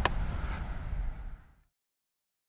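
Low outdoor background rumble with a single sharp click at the very start. It cuts off to silence about one and a half seconds in.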